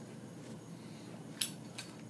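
Two short sharp clicks, a little under half a second apart, of a lighter being struck to light a tobacco pipe.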